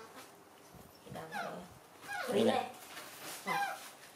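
Baby macaque giving short, high calls that slide down in pitch, about three times, with a woman's voice in between.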